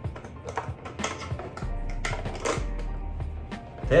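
Light plastic clicks and knocks as the parts of a Hamilton Beach single-cup coffee maker are handled and fitted together, over background music.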